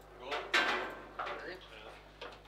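Knocks and rattles of a table football table as the ball is put back into play after a goal, the loudest a sharp knock about half a second in, followed by smaller clacks of the rods and ball.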